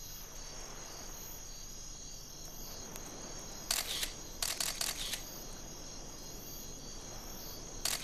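Steady high-pitched chorus of night insects such as crickets, with a quick run of short sharp clicks about four to five seconds in and another click near the end.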